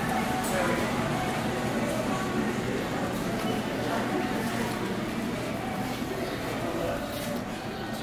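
Busy store ambience: indistinct background voices of shoppers over the steady hum of a large indoor hall.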